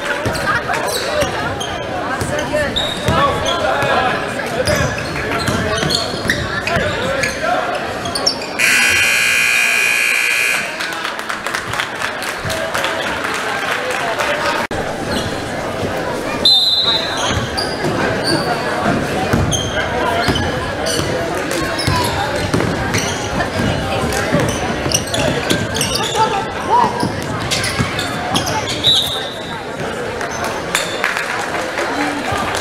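Basketball game in a gym: a ball bouncing on the hardwood court amid constant crowd voices. A scoreboard buzzer sounds loudly for about two seconds around nine seconds in.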